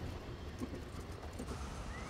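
Faint, irregular knocks, like hoofbeats on a street, over a low hum, with a short rising tone near the end.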